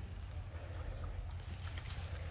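Low steady rumble of wind on the microphone, with a few faint rustles.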